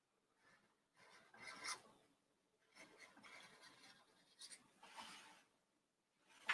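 Faint scratching of a marker tip drawn across canvas, in three short stretches of strokes.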